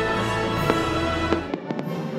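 Fireworks going off over show music with held chords: a few sharp bangs, bunched together near the end. The deep bass of the music drops out suddenly about three-quarters of the way through.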